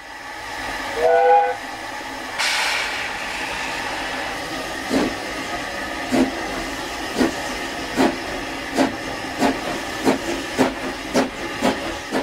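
Ffestiniog Railway narrow-gauge steam locomotive giving a short two-note whistle, then a burst of steam hiss. After that it starts to chuff, the exhaust beats slow at first and quickening as it gets under way.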